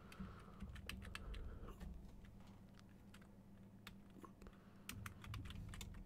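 Faint computer keyboard typing: scattered keystroke clicks, a cluster in the first couple of seconds, a sparse stretch, then more keystrokes near the end.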